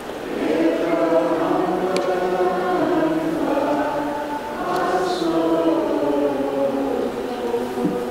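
A choir singing a slow liturgical chant in long held notes that glide slowly from one pitch to the next.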